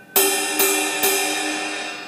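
Ride cymbal struck three times on its side, about half a second apart, each stroke ringing on and slowly fading.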